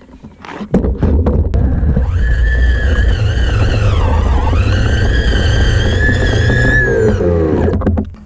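The single 3500-watt electric drive motor of a six-wheel electric skateboard whines as it drives through grass, over a heavy rumble of the wheels and the ground. The whine dips in pitch midway, climbs again, then falls away near the end as the board slows. With only one motor driving, the wheels are losing traction on the grass.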